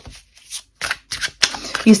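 Tarot cards being shuffled by hand: a string of short, quick card rustles and flicks, a few per second.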